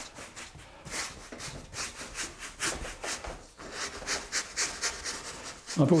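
Wide flat bristle brush scrubbing oil paint onto a plywood panel in repeated short strokes, about two or three a second.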